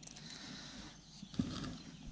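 Quiet handling sounds of hands raking through damp beach sand and picking out shards of a broken glass bottle, with a brief louder scrape about halfway through.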